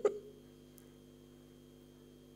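A man's brief chuckle right at the start, then a faint steady hum made of a few fixed tones, one of them high and thin.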